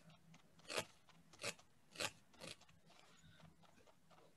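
A multi-needle felting tool stabbing through wool into a foam pad: four short, faint strokes about half a second apart.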